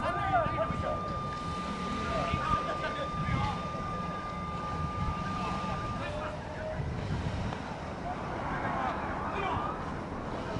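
Players' voices calling out across a ball field over a steady low rumble, with a steady high tone that stops about six seconds in.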